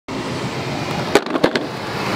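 Longboard wheels rolling over cracked asphalt, a steady rough rumble, with three sharp clacks a little past the middle as the board hits cracks in the road.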